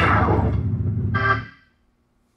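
Hammond tonewheel organ ending a piece: a fast downward glissando swept across the keys over a held bass, then a short final chord that cuts off about a second and a half in.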